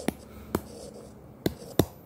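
Stylus tapping on a tablet's glass screen while letters are handwritten: four sharp clicks, two close together near the start and two close together near the end.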